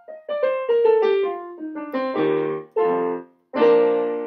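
Yamaha digital piano playing the closing bars of a song: a descending run of single notes, then three chords, the last held and left ringing out.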